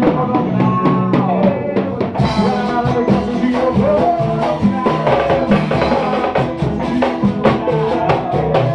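A live band playing: a drum kit with cymbals and large drums keeping a dense, steady beat, with guitar and a melody line over it.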